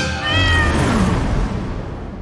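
A domestic cat meows once, a short call of about half a second, over the ringing tail of music that fades away.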